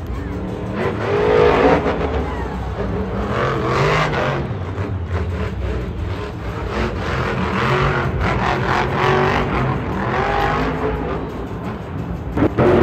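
Several monster trucks' big supercharged V8 engines revving up and down as the trucks drive around a dirt arena track. The loudest rev comes about two seconds in.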